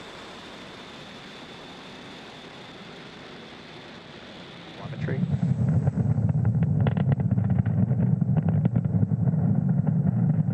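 A steady hiss, then about five seconds in a loud, low roar full of crackle sets in: the Falcon 9 first stage's nine Merlin 1D engines firing in ascent.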